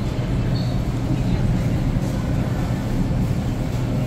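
Steady low rumble and hum of supermarket refrigeration and air handling around an open refrigerated cheese case.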